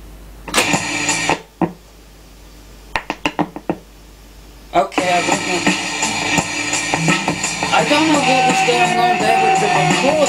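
Reel-to-reel tape deck keys clicking and clunking a few times. About five seconds in, music from the tape starts and plays loudly through a homemade push-pull valve amplifier (ECC83 driver, a pair of 6L6T output tubes) into a small speaker.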